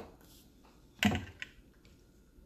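Clear plastic tumbler being picked up: one knock about a second in, followed by a few faint light clicks.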